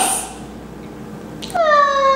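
A high-pitched, drawn-out vocal whine from a girl, starting suddenly about one and a half seconds in and sliding slowly down in pitch.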